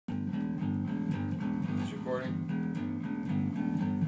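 Electric bass guitar played through an amplifier: a steady run of repeated plucked low notes.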